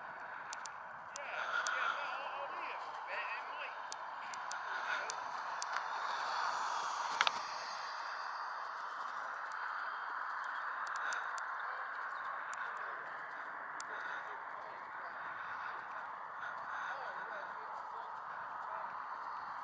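Indistinct, distant voices over a steady outdoor background, with scattered faint clicks and one sharper click about seven seconds in.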